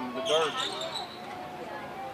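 People talking near the microphone, loudest in the first second and then quieter, with a brief high-pitched tone under the voices about a quarter of a second in.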